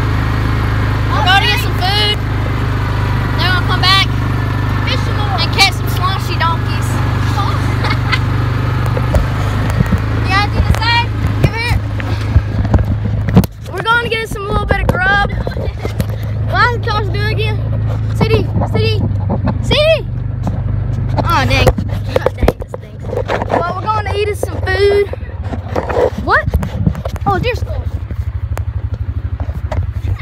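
Indistinct voices talking over a steady low hum, with scattered knocks and taps.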